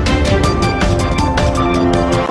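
TV news intro theme music, loud, with a fast, steady drum beat under sustained synthesized tones.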